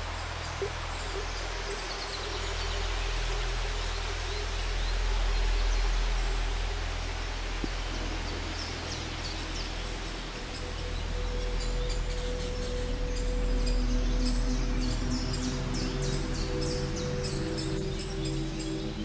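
Small birds chirping over a steady low rumble of outdoor noise, with music of held, sustained tones fading in about two-thirds of the way through.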